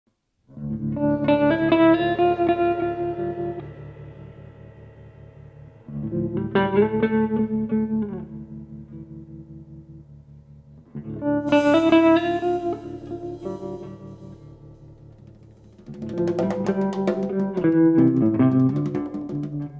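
Jazz trio of hollow-body electric guitar, bass and drums playing a slow tune in sustained chords. Four phrases come about five seconds apart, each swelling and then fading, with a cymbal wash at the start of the third.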